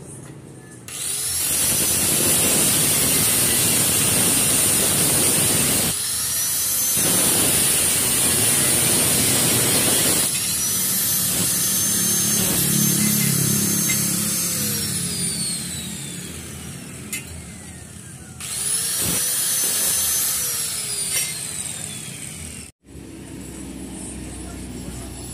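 Angle grinder working a steel angle bar: the motor whines up to speed about a second in and its disc grinds against the metal with a dense, harsh noise, with short breaks and restarts. Twice it is switched off and the whine falls slowly as the disc winds down, with a restart in between.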